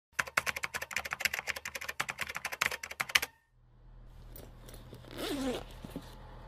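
A fast run of sharp clicks, like rapid typing on a keyboard, for about three seconds; it stops abruptly, and a low steady hum follows, with a brief gliding sound near the end.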